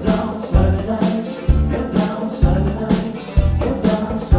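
Live funk band playing with drums, bass, electric guitar and a trombone and saxophone section, male voices singing over a deep, punchy bass line.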